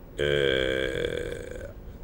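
A man's voice holding one long, steady vowel for about a second and a half: a drawn-out hesitation sound between words.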